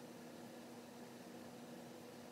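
Near silence: a steady low hiss with a faint, even hum, room tone in a small tiled bathroom.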